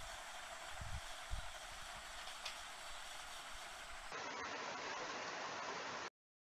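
Faint steady room-tone hiss with a few soft low thumps in the first two seconds; about four seconds in, the background noise changes abruptly to a duller, fuller hiss.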